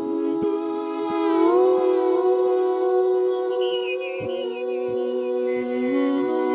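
Several voices humming a slow melody in harmony, with long held notes that shift in pitch every second or two, and a few soft low knocks underneath.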